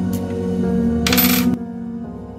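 Background music, with a brief metallic clatter and ring about a second in: a small padlock key set down on a hard tabletop.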